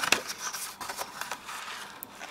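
Cardstock rustling and crackling as a pop-up card is opened out and its paper flower-pot piece unfolds, with a sharper crackle near the start.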